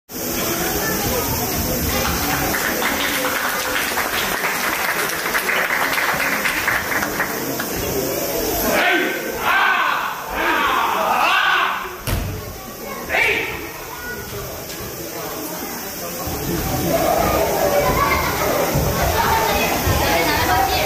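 Crowd murmur and voices in a large hall, with one sharp thud just past the middle.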